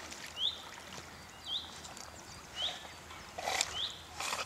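A short, high call that sweeps upward repeats about once a second at a very even pace. Water sloshes and splashes near the end.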